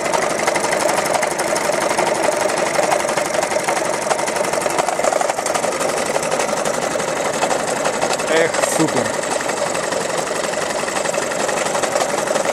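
Homemade wood-fired hot-air Stirling engine running unloaded, giving a steady, rapid mechanical clatter from its pistons and crank. A brief falling tone sounds about eight and a half seconds in.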